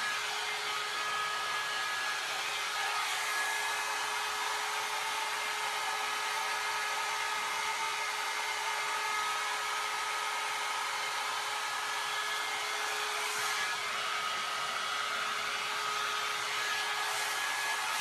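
John Frieda Salon Style 1.5-inch hot air brush running steadily: an even rush of blown air with a constant motor whine.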